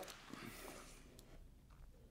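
Faint rustle of a nylon camera backpack's back panel being folded open, then near silence.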